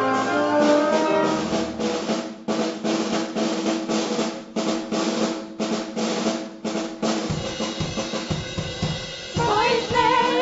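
Live orchestra holding chords under a series of snare and bass drum strokes. A woman's voice starts singing over it near the end.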